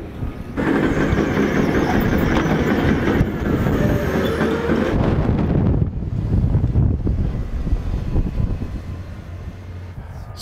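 Heavy construction machinery running and moving nearby: a loud, dense mechanical rumble with clanking for the first five seconds or so, easing to a lower, steadier rumble after that.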